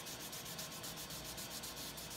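Fine 800-grit wet sandpaper rubbed in quick, short, even strokes over the soapy, wet finish of a wooden model hull: wet sanding to cut the shine out of the coats of finish.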